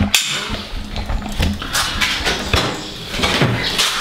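Handling noise as a DSLR camera with a shotgun microphone is lifted out of a camera bag: a string of knocks and clunks with rustling between them.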